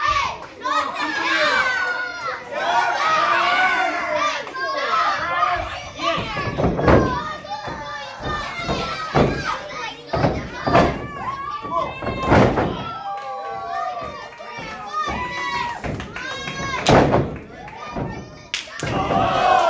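Children in the audience shouting and chattering throughout, with several loud thuds of wrestlers slamming onto the wrestling ring's mat.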